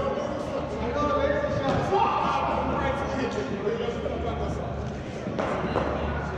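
Men's voices talking in a large indoor hall, with a few short, sharp knocks of cricket balls being hit and landing in the practice nets.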